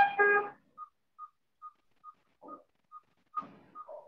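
ICU bedside patient monitor heard over a video call: a pitched alarm tone sounds at first, then short high beeps follow evenly, a little over two a second. The alarm is set off by her heart rate climbing past 140, around 142, which those present take as a positive reaction from the unconscious patient.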